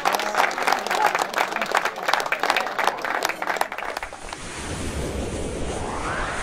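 A small crowd applauding with hand claps for about four seconds, which then cuts to a rising whoosh sound effect.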